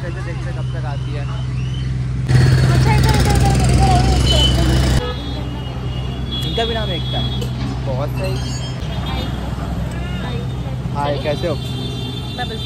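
Voices talking over steady street noise with a low hum. About two seconds in, a louder rush of noise starts abruptly and cuts off about three seconds later.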